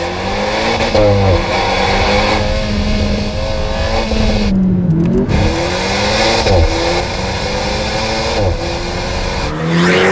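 Alpine A110's 1.8-litre four-cylinder turbo engine pulling the car along at fairly steady revs. About halfway through, the engine note dips and then climbs again, and it rises briefly a few more times after that.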